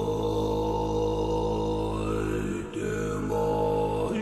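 A deep voice chanting a long, drawn-out 'Om', held on one low pitch. About two and a half seconds in it breaks briefly for breath before a second long tone.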